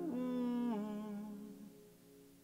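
A man humming a closing note that drops in pitch about three-quarters of a second in and fades away, over the last acoustic guitar chord ringing out.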